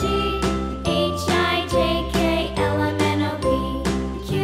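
Intro jingle music with a steady beat, about two beats a second, over a bass line.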